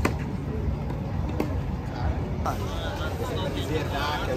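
Outdoor ambience of people talking over a steady low rumble, with a sharp tennis-ball strike off a racket at the very start.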